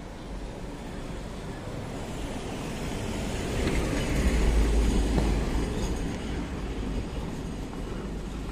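A large vehicle passing close by: a deep rumble with road noise that swells to its loudest about halfway through and then fades.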